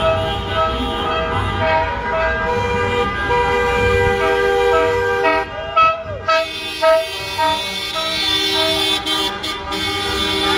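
Many car horns honking together in a slow motorcade, some held long and some tooted in short repeats, over the low rumble of slow traffic.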